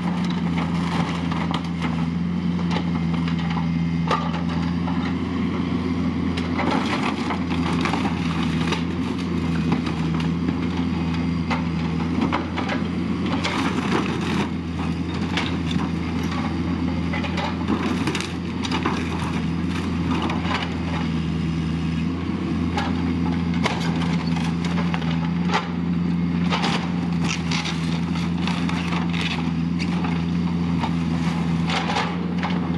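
A Bobcat 331 mini excavator's diesel engine runs steadily while its bucket crushes an old camper trailer. Clusters of cracking and splintering wood and crumpling sheet metal sound over the engine hum as the trailer's frame and skin cave in.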